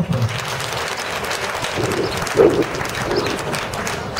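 A crowd applauding steadily, with a brief voice heard about halfway through.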